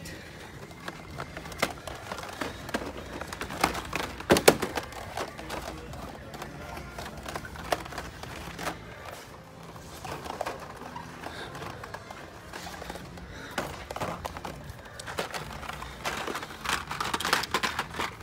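Quiet shop background music over the speakers, with scattered clicks, taps and plastic crinkles of blister-packed die-cast toy cars being handled on metal peg hooks; the sharpest knock comes about four and a half seconds in.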